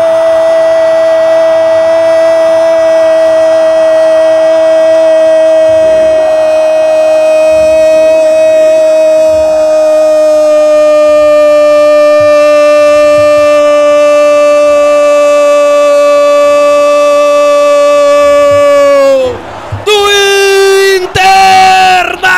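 Football radio commentator's goal cry: 'Gol' drawn out as one long, high, held note for about nineteen seconds. The note sags slightly in pitch just before it breaks off, and he then goes on shouting excitedly.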